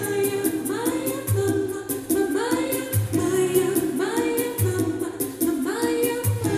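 A woman singing a pop song live into a handheld microphone, amplified over a backing track with a steady beat and a bass note returning about every second and a half.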